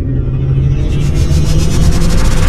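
Loud cinematic logo-intro sound effect: a deep, steady rumble with a whoosh above it that grows and pulses as it builds.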